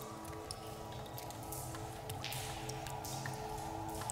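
Quiet, dark ambient film score: a low sustained drone of held tones, with sparse soft clicks and faint airy swells of hiss over it.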